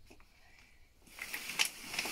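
Chicco OhLaLa Twin stroller being pulled open from its fold. It is nearly quiet at first with a faint click, then from about halfway comes a growing rustle of the seat fabric with a few clicks from the frame as the handle comes up.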